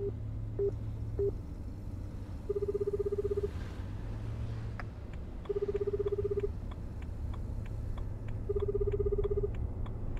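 A phone call being placed: three short beeps about half a second apart, then the Japanese telephone ringback tone, a low warbling tone one second long, sounding three times at three-second intervals. A steady low hum runs underneath.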